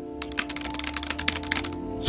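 Keyboard typing sound effect: a quick run of key clicks lasting about a second and a half, over soft background music with held notes.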